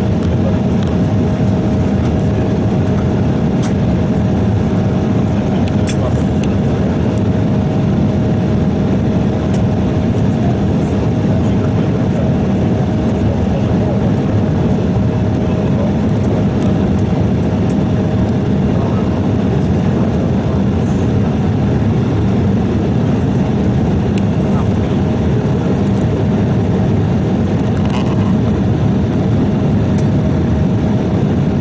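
Cabin noise of an Embraer 175 taxiing after landing: a steady, even rumble from its turbofan engines at low taxi power with a constant hum running through it.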